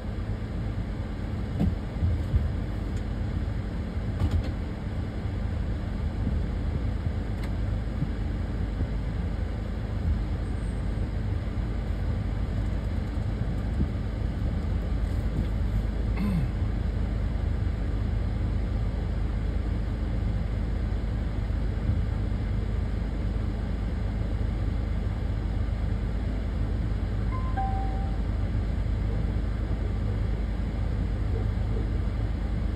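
A steady low rumble, with a few faint knocks in the first few seconds and a short two-note chirp near the end.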